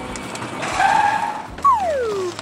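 Edited-in cartoon sound effects: a short tire-squeal skid about half a second in, then a whistle-like tone sliding down in pitch near the end.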